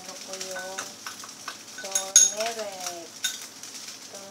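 Fried rice sizzling in a pan, with a metal spoon clinking against a small ceramic bowl and utensils knocking; the sharpest, ringing clink comes about two seconds in, another just after three seconds.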